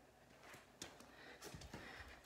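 Near silence with a few faint, soft knocks and rustles from a person stepping onto a floor mat and dropping to kneel while handling a dumbbell.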